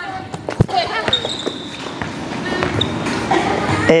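Volleyball being struck and bouncing on a hard gym floor, with one sharp smack about half a second in and a few lighter hits after it, in a large reverberant gym.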